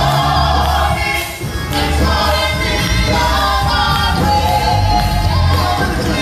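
Gospel praise team and choir singing through the church sound system, several voices together over a low bass line of long held notes.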